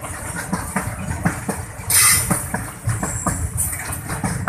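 Freight train of fuel tank wagons rolling past: a steady rumble with quick, uneven clicks of the wheels over the rail joints, and a brief loud hiss about halfway through.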